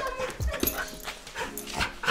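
Dog giving short vocal sounds during rough play with a person on the floor, with a few scuffling knocks against the wooden floorboards.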